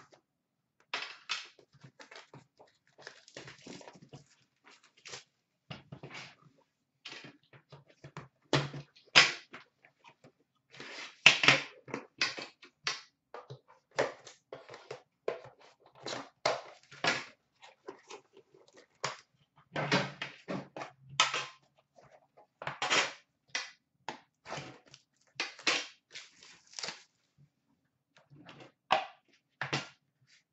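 A metal hockey-card tin being handled and opened on a glass counter: irregular rustles, scrapes and knocks, with louder clusters in the middle and near the end.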